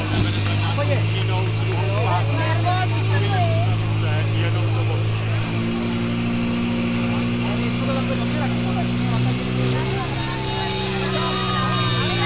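Portable fire pump engine running hard and steady, its note shifting about halfway through as it pumps water out through the hoses, with spectators' shouting over it.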